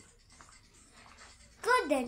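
Near-quiet room tone with faint scratchy noise, then a person's voice speaking loudly near the end.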